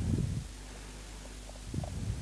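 Low rumbling handling noise from the handheld camera being moved over the circuit board, loudest in the first half second and again near the end, over a faint steady hum.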